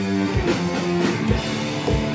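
Live rock band playing: distorted electric guitars holding heavy chords over a drum kit, the drums landing about once a second, with no singing.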